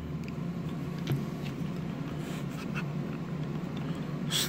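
A steady low background hum, with a few faint clicks and taps of hard plastic as a stick protector fitted over a DJI Mavic Pro controller's sticks is pressed and wiggled.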